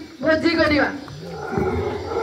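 A person's voice through the microphone, giving a long drawn-out, roar-like cry a quarter-second in that bends and falls away. From about a second and a half in, lower broken voice sounds follow.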